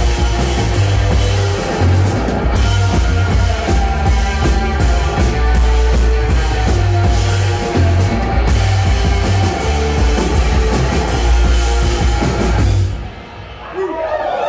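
A live rock band playing loud: drum kit, electric guitar and electric bass. The song stops about 13 seconds in, leaving a brief fading ring.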